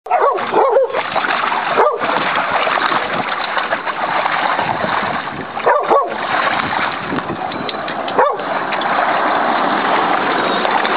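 Dogs play-wrestling in a plastic kiddie pool, water splashing and churning without a break. Short dog vocalizations cut through the splashing a few times: in the first second, around two seconds, around six seconds and around eight seconds.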